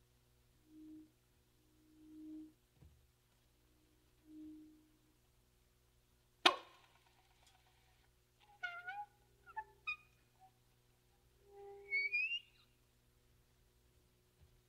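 Quiet, sparse free-improvised music from a small acoustic-electric ensemble: three soft low notes, then a single sharp attack that rings briefly about six seconds in, followed by short squeaky tones that slide in pitch and a rising squeal near the end.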